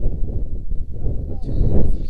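Wind buffeting the microphone: a low, rough rumble, with a faint voice about three quarters of the way through.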